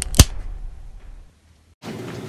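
A single sharp crack about a fifth of a second in, cutting off dramatic background music whose low tail fades away over the next second, then a brief silence before faint room tone.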